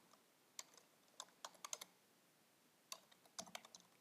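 Faint computer keyboard keystrokes typing a line of code, coming in short irregular clusters: a few quick keys about a second in and another run near the end.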